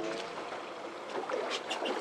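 Wind and water noise aboard a small fishing boat at sea, with a few faint clicks about three-quarters of the way through. A pitched tone that glides in pitch fades out in the first moment.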